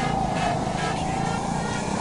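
Go-kart running at speed, heard from the driver's seat: an even rush of motor and rolling noise with a faint steady note.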